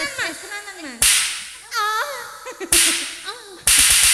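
Sharp, loud percussive cracks, each fading off with a hiss: one about a second in, another near three seconds, then a quick run of several near the end. Between them, women's voices slide up and down in pitch.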